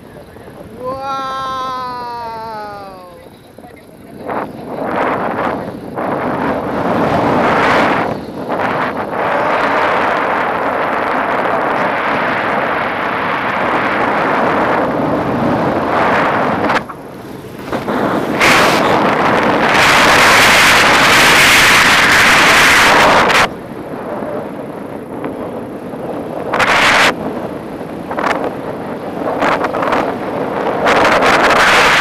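A short, high cry falling in pitch about a second in, then wind buffeting the microphone of a camera held out on a selfie stick in paraglider flight, rising and falling in gusts and loudest for several seconds past the middle.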